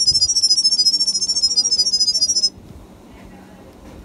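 Smartphone speaker playing the 360 smart camera app's pairing 'sound wave': a rapid string of high-pitched electronic beeps jumping from pitch to pitch, encoding the Wi-Fi password for the camera to pick up. It cuts off suddenly about two and a half seconds in.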